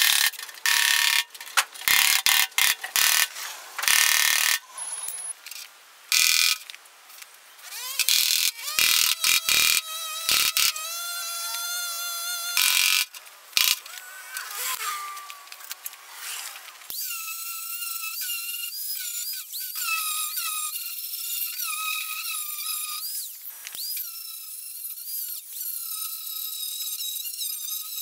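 Metal-shaping work on a steel fender: a fast, jumbled run of clicks, knocks and scraping for the first half. Then, from about seventeen seconds in, the high, wavering whine of an angle grinder working the steel.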